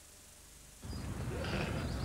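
Near silence with a low hum and tape hiss, then a little under a second in, a TV advert's soundtrack cuts in suddenly as a steady, noisy outdoor background.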